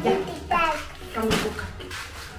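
A young child's voice, a brief high vocal sound without clear words, then a single sharp click or tap a little over a second in.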